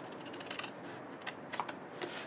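Scissors snipping through cardstock: a few short, quiet snips as tabs are cut down along a score line.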